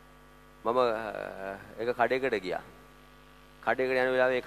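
A man's voice through a church PA in two stretches of drawn-out phrases, the first starting just under a second in and the second near the end, over a steady electrical mains hum from the sound system that is heard alone in the gaps.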